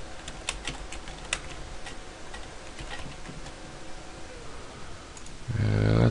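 Computer keyboard keys clicking as short commands are typed into a command prompt: about a dozen scattered keystrokes, most of them in the first second and a half. A voice starts just before the end.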